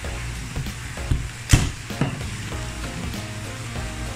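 Sharp plastic clicks and knocks as the black plastic body of an aquarium internal filter is turned and handled, the loudest about a second and a half in. Quiet background music with low held tones runs underneath.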